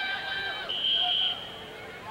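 A referee's whistle blown once in a short, high blast, about three-quarters of a second in, over faint stadium background noise.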